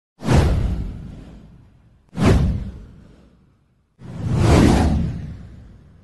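Three whoosh sound effects for a title-card animation, about two seconds apart. The first two hit suddenly and fade out over about a second and a half; the third swells up more slowly before fading.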